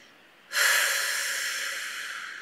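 A woman's deep breath starting about half a second in and fading out over about two seconds.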